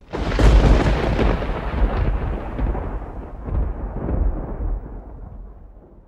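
Sudden deep boom with a long rumbling tail, like thunder, that fades away over several seconds: a logo-sting sound effect.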